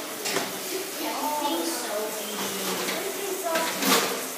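Children's voices chattering indistinctly in a tiled bathroom, over a steady hiss of tap water running into a stainless-steel wash trough. Two sharp clatters, one just after the start and one near the end.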